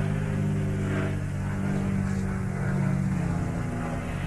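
A steady low mechanical hum made of several held low tones, thinning out in the last half-second.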